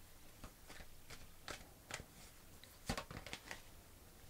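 A deck of tarot cards being shuffled and handled by hand: faint, irregular soft flicks and taps of card stock, the clearest a little before the end as a card is drawn.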